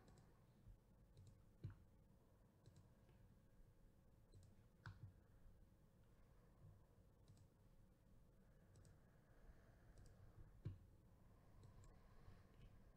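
Near silence with a few faint, scattered clicks of a computer mouse as text is selected and windows are switched.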